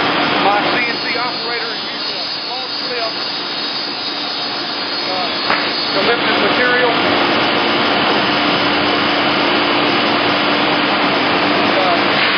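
Steady loud rushing of industrial vacuum machinery with a constant hum under it, growing somewhat louder about halfway through, as a vacuum tube lifter handles a sheet-goods panel.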